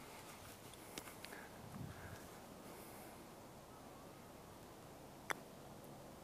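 Mostly quiet open-air background with a faint click about a second in: a putter striking a golf ball on the green. A single sharp click comes near the end.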